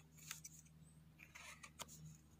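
Knife blade scraping dirt and forest debris off a freshly picked penny bun mushroom, in a few short, faint scrapes.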